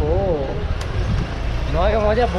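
Steady low rumble of a vehicle engine, with a person's voice briefly at the start and again near the end.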